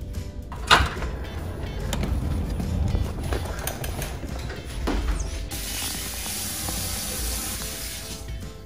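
Background music with a door being handled: a sharp latch-like click about a second in and a few knocks after. In the second half a steady hiss of air flowing from a floor-level wall air vent.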